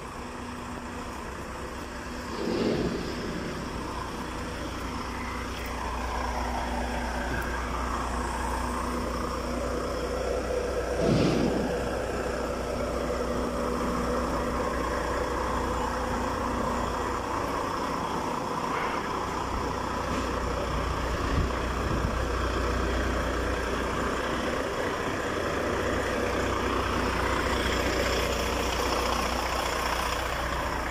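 Heavy truck diesel engine idling steadily, a constant low hum. Two brief louder noises come through, one about two seconds in and one about eleven seconds in.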